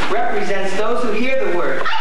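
Several performers' voices overlapping in wavering, whining vocal sounds rather than words, dog-like whimpers and yips.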